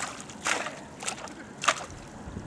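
A stick jabbed into shallow water, making short splashes: a louder one about half a second in and a sharper one near the end.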